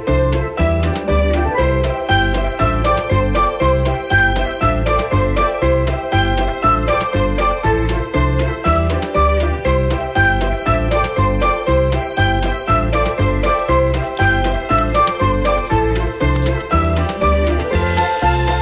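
Christmas-style background music: a jingling bell tune over a steady bass beat of about two beats a second.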